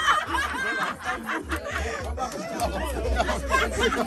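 A small group of people laughing and chattering excitedly, with low rumbling handling noise underneath.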